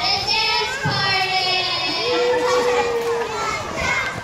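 A group of young children's voices at once, some held as long drawn-out notes.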